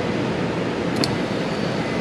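Acura Integra's power window motor running, driving the door glass with a steady whir and a single click about a second in. The rebuilt window switch is working the glass.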